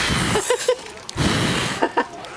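Two long puffs of blowing breath close to the microphone, each lasting about half a second, the second starting just after a second in: someone blowing to show how to blow out birthday candles.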